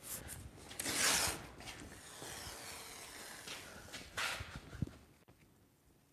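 Masking tape being pulled off the roll and pressed along a car's body panel, heard as rubbing, hissing strips of sound. The loudest pull is about a second in, then a longer hiss and a short one before it goes quiet.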